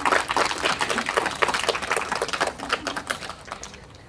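A small audience applauding; the clapping thins out and stops near the end.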